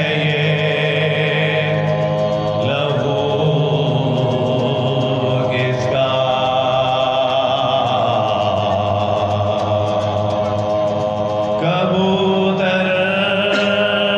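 Soz khwani: a man chanting a Shia elegy in long, held notes that bend slowly from pitch to pitch, voice alone without instruments.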